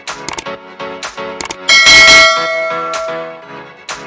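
Background electronic music with a loud bell-like ding a little under two seconds in that rings on and fades over about a second and a half, the notification-bell sound effect of a subscribe-button animation.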